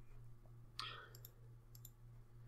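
Faint computer mouse clicks, a short burst about a second in and a few more sharp clicks near the end, over a steady low hum in near silence.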